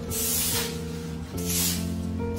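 Broom sweeping dry and fresh fallen leaves across concrete: two swishing strokes, one near the start and one past the middle, over background music with sustained notes.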